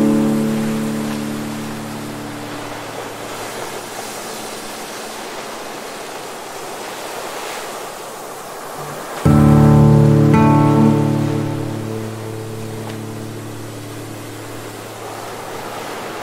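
Slow acoustic guitar chords over the steady wash of ocean surf. A chord rings out and fades at the start. Another is strummed about nine seconds in and rings out, leaving the waves alone between chords.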